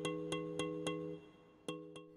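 Soft instrumental background music: held chord notes over a light ticking beat, about four ticks a second, dropping away briefly shortly before the end.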